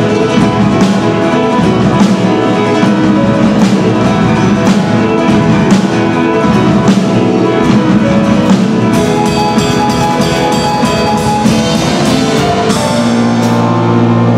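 Live instrumental trio of grand piano, drum kit and acoustic guitar playing an upbeat arrangement of a folk song, with the drums keeping a steady beat. The cymbals get busier in the second half, then the drums drop out near the end, leaving held chords.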